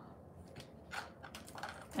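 Craft wire (18-gauge, rose-gold-coloured) being bent by hand: a few faint, sharp clicks and light rubbing as the wire is worked between the fingers.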